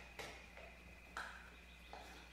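Two faint soft clicks about a second apart from a hand turning a Sky-Watcher AZ-GTi telescope mount in azimuth with its azimuth clutch open, over a low steady hum.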